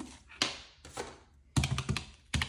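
Plastic round-key desk calculator buttons clicking as numbers are keyed in: a burst of four or five quick presses near the end, after a single sharp click about half a second in.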